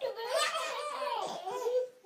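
A baby laughing in one long, unbroken run of laughter that stops near the end.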